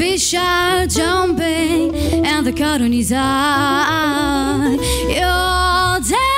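A female vocalist singing jazz into a microphone, with long sliding and held notes that waver with vibrato, over a band's accompaniment.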